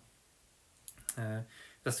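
A pause in a man's speech: very quiet room tone at first, then a sharp click about a second in, a short spoken syllable, and another click just before he carries on talking at the end.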